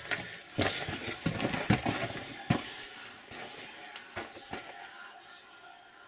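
An unexplained airy, hissing noise in a mine tunnel, with a few sharp clicks, fading away over the last couple of seconds. It doesn't sound like wind, and it almost sounds like snakes.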